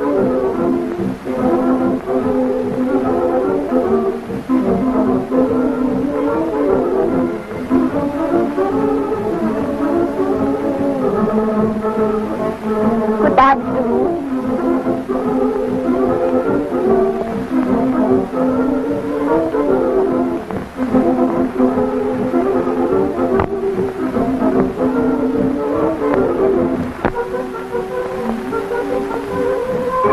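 Slow film-score music with held chords that shift gradually, and one brief click about halfway through.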